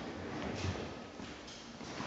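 Faint footsteps on a gym floor, a few soft steps over quiet room noise.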